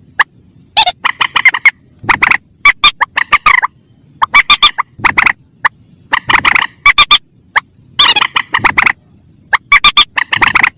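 Recorded lure calls of mandar (rail) birds, adults and chicks together: rapid runs of short, loud, harsh notes, each run lasting about half a second to a second, with brief pauses between runs.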